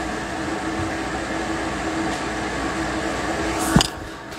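A steady mechanical hum with a rushing noise, cut off by a sharp knock or click near the end.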